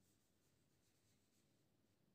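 Near silence, with faint strokes of a felt-tip marker writing on a whiteboard.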